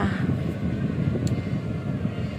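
Steady low rumble of engine and road noise heard inside the cabin of a Perodua car being driven along a road.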